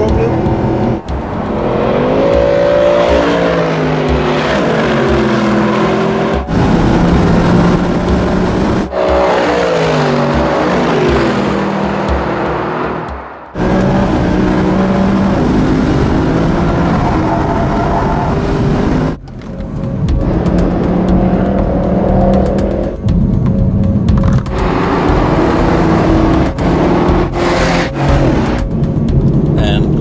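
Mercedes-AMG performance car engines revving hard on a race track, pitch climbing and falling through gear changes. The sound is cut together from several shots, so it breaks off and restarts every few seconds.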